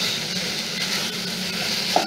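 Food frying in a pan, giving a steady sizzle.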